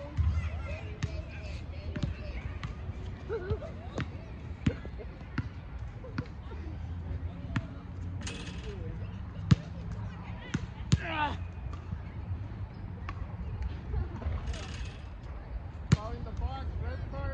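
A steady series of sharp knocks, roughly one every two-thirds of a second, over outdoor background noise, with a short voice-like call about eleven seconds in.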